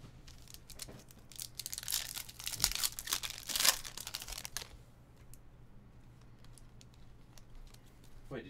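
A trading-card pack's plastic wrapper being torn open and crinkled in the hands: a burst of crackling from about one and a half seconds in to about four and a half seconds, loudest near the middle. After it come only a few faint clicks of cards being handled.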